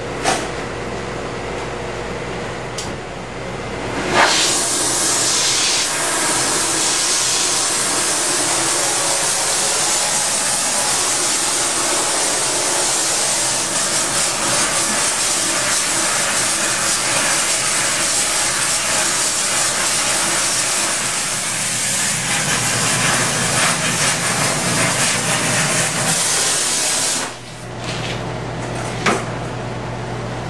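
Handheld gas torch lit with a pop about four seconds in, then the flame hissing loudly and steadily for over twenty seconds before it is shut off abruptly near the end.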